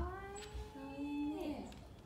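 A dog's long, drawn-out whining howl. It holds one pitch for about a second and a half, with a second, lower tone joining partway through, then slides down and stops.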